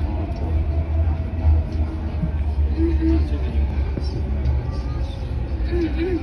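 Metro train car running on an elevated track, heard from inside the car as a steady low rumble.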